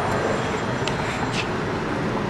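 Steady outdoor street noise at night: an even rushing sound with no music or voice, broken by a couple of faint clicks.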